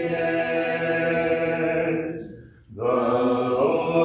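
Congregation singing a hymn unaccompanied, holding long notes. The singing breaks off briefly about halfway through, then the next line begins.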